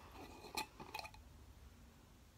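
Metal lid being worked off a glass mason jar: a few faint clicks and clinks in the first second.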